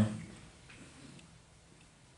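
The tail of a man's amplified speech dies away, then a pause of quiet room tone with a few faint, short ticks.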